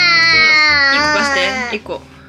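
An 11-month-old baby letting out one long, loud wail, its pitch falling slowly, that breaks off shortly before the end.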